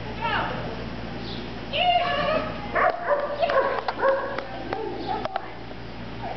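Short, high-pitched excited calls, some held on one pitch and some stepping up or down, with several sharp clicks between about three and five seconds in.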